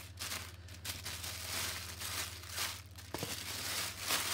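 Tissue paper crinkling and rustling in repeated bursts as it is folded and pressed down over the contents of a box, over a low steady hum.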